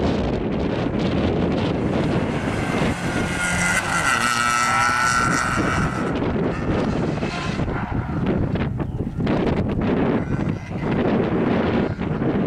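Skoda Fabia rally car's engine working hard through a cone slalom, with heavy wind buffeting on the microphone. A high, wavering squeal rises over it for a few seconds about a third of the way in.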